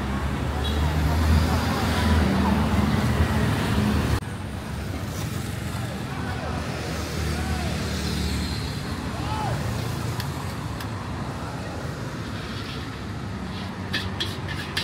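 Traffic noise on a busy street, with a loud low engine rumble for the first four seconds. After an abrupt cut it gives way to quieter traffic and distant voices.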